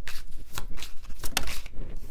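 A deck of tarot cards shuffled by hand: a few quick, irregular card slaps and rustles.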